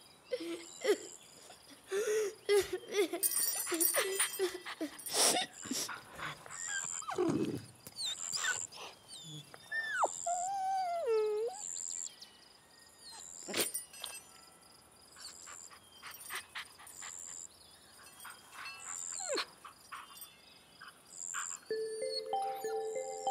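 A dog whimpering and whining in short cries, with a few whines that slide down in pitch about ten seconds in; scattered small clicks around them.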